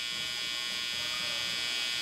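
Cordless T-blade hair trimmer running steadily with a high-pitched buzz while its blade corner edges the hairline at the temple.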